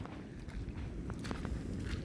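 Footsteps on exposed coral reef rock, a few faint steps in the second half, over a steady low rumble of the open-sea surf breaking on the reef edge.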